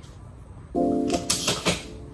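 Background music: sustained keyboard chords come in a little under a second in, with a few short sharp ticks over them, above quiet room sound.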